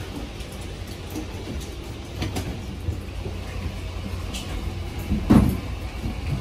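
Steady low rumble in a jet bridge, with scattered light knocks of footsteps on its floor and one louder thump about five seconds in.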